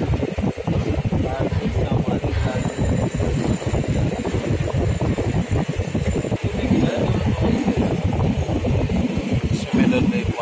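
Indistinct voices over steady background noise, with a faint high whine for about four seconds in the middle.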